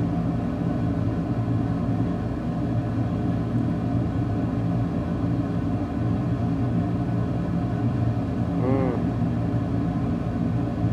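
A steady low machine hum, like a motor or fan running, with a brief chirp about nine seconds in.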